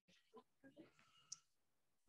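Near silence on a video-call line that has just come back on, with a few faint murmurs and one short click about a second and a quarter in.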